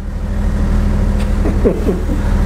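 A steady low rumble with a constant hum, with a faint voice briefly near the end.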